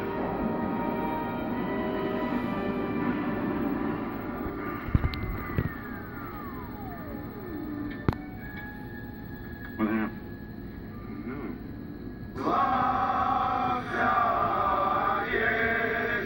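Film soundtrack from a VHS tape playing through a CRT television's speaker: music first, then a single tone falling in pitch over about two seconds, and voices of the film's dialogue near the end.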